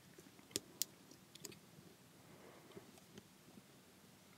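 Near silence with a few faint clicks and taps in the first second and a half, from paper and card being handled and pressed down on a craft mat.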